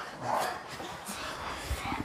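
People breathing hard and panting while doing sit-ups, with a stronger breath about half a second in.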